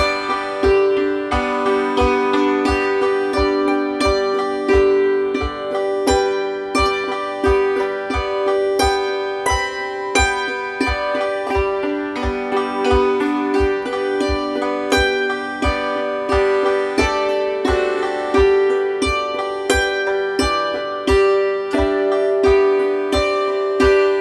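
Hammered dulcimer struck with a pair of hammers, playing chords in a steady rhythm of evenly spaced strokes, the struck strings ringing on over one another.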